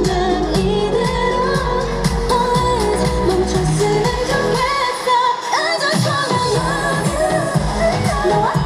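K-pop dance-pop song with a female lead vocal over a backing track, played live over a concert sound system. The bass and beat drop out for about a second and a half around the middle while the voice carries on, then come back.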